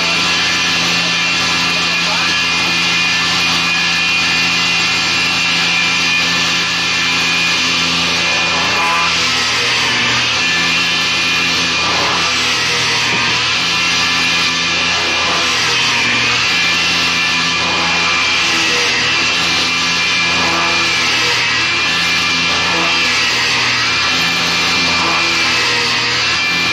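Electric motor of a shop-built horizontal boring machine running steadily while its auger bit bores into a wooden board. The pitch dips briefly several times as the bit bites into the wood.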